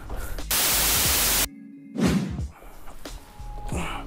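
A loud, even burst of static hiss lasting about a second that cuts off abruptly, an editing transition effect over a cut between scenes. After a brief near-silent gap come quieter knocks and handling noise.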